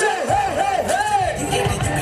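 Loud dance-routine music over a PA, with a run of quick swooping tones rising and falling in the mix, and an audience shouting over it.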